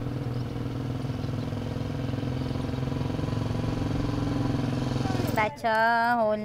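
Small motorcycle engine running steadily as the bike rides closer, its sound slowly growing louder. Near the end a voice begins speaking.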